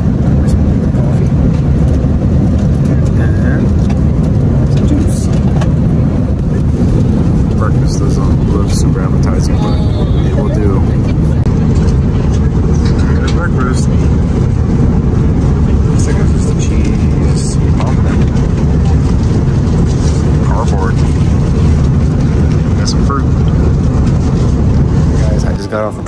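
Steady low rumble of an Airbus A330neo's cabin in flight, engine and airflow noise, with faint voices now and then. It cuts off suddenly near the end.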